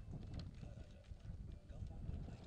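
Faint open-air background: an irregular low rumble with faint, indistinct voices.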